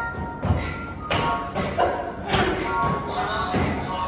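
Pop dance music playing, with irregular thuds of dancers' feet stepping and stomping on the studio floor.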